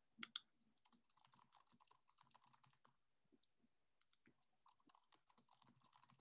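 Faint typing on a computer keyboard: quick, irregular key clicks, with a slightly louder click or two just after the start.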